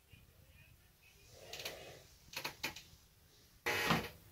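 Quiet room with small handling noises: a soft rustle about a second and a half in, three faint clicks shortly after, and a short, louder rustle near the end.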